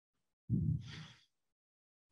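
A person's short audible breath about half a second in, lasting under a second.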